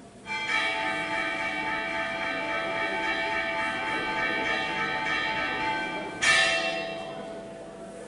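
Altar bells rung at the elevation of the consecrated host. They ring steadily from a third of a second in, are struck again more loudly a little after six seconds, and then die away.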